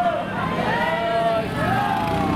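A group of voices chanting together in a walking religious procession, in held, rising-and-falling phrases.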